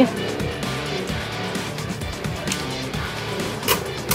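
Two Beyblade Burst tops, Maximum Garuda and Kreis Satan, spinning and scraping against each other in a plastic stadium, with a few sharp clicks of the tops striking near the end. Background music plays throughout.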